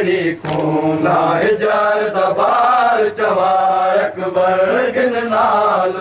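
Men's voices chanting a noha, a Shia mourning lament, in long melodic phrases, with rhythmic chest-beating slaps (matam) about every half second.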